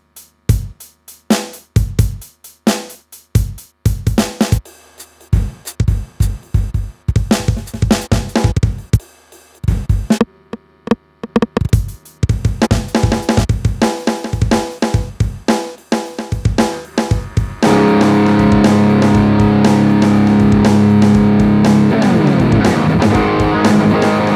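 Drum-machine beats from a Zoom G1X Four multi-effects pedal, the pattern changing a few times with short breaks as its settings are scrolled. About eighteen seconds in, a loud distorted electric guitar played through the pedal comes in with sustained chords over the beat.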